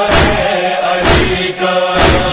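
A group of voices chanting a devotional lament in unison, with a steady low thump about once a second keeping the beat.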